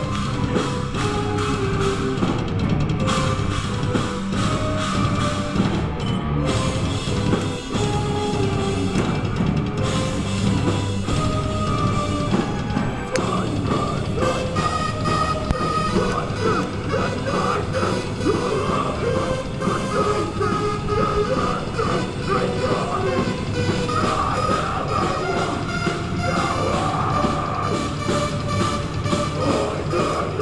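Live rock band playing loudly and continuously: drum kit, bass guitar, electric guitar and keyboards, heard from the audience in a small club room.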